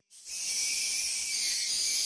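AI-generated sound effect of bats flying in a cave: a steady high-pitched hiss that starts a fraction of a second in.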